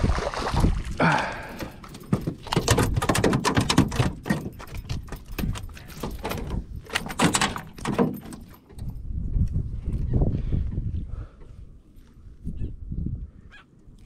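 A redfish flopping and thrashing on the floor of a small flat-bottomed jon boat: a rapid, irregular run of knocks and slaps lasting several seconds. It then settles and goes quieter in the second half.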